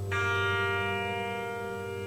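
Grand piano: a chord struck just after the start rings and slowly fades over low bass notes still sounding.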